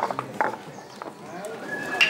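Kabuki wooden clappers struck in a quick run of sharp clacks in the first half second, with a couple more about a second in. A faint murmur of voices lies underneath, and a high held note starts near the end.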